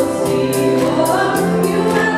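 Live praise band music with group singing led by women's voices, over a steady beat of sharp high hits.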